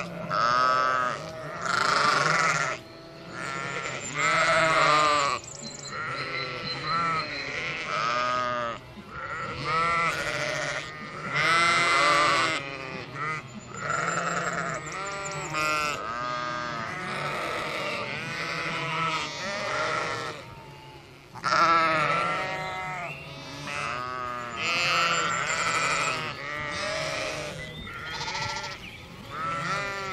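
A flock of sheep bleating, many overlapping wavering baas one after another with short gaps between them.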